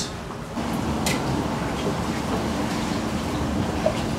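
Steady hiss and low hum of a chip-shop frying range at work, with a single click about a second in.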